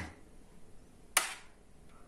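A metal serving spoon knocks once, sharply, against the dish about a second in, while sauce is spooned from a roasting tray onto a plate.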